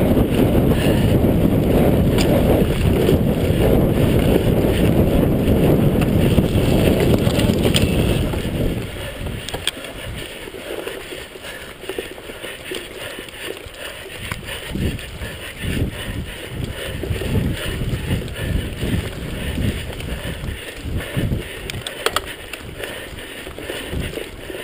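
Mountain bike ridden fast over a dirt forest trail: wind buffeting the camera microphone over the rumble of the tyres. About eight seconds in the wind noise drops away, leaving quieter rolling with irregular knocks and rattles as the bike goes over bumps.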